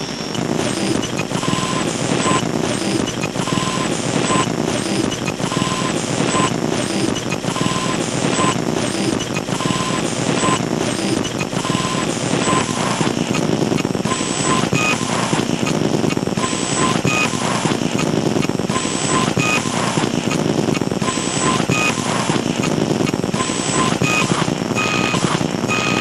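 Experimental electronic music: a dense, steady noise bed with short electronic beeps recurring, often in pairs about every two seconds, at one pitch at first and at several pitches in the second half.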